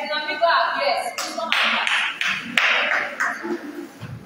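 A small group of people clapping in a room for about two seconds, following a voice speaking.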